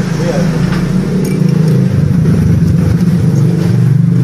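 An engine running steadily, a continuous low drone, with faint voices underneath.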